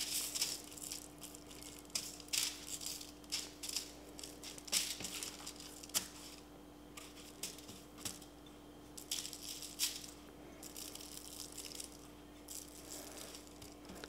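Dry blackening seasoning sprinkled by hand over fish fillets on an aluminium-foil-lined sheet pan: short, irregular, quiet hisses as pinches of spice grains land on the foil and fish.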